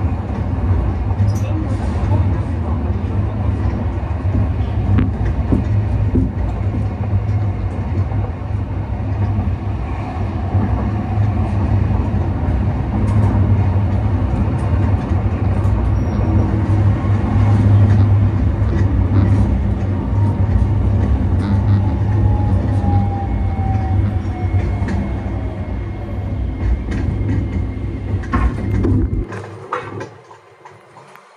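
Sapporo streetcar A1100 'Sirius' low-floor tram running, heard from inside the car: a steady low rumble of the running gear with scattered clicks from the wheels on the rails. Later a falling motor whine as the tram slows, and the rumble cuts off about a second before the end as it comes to a stop.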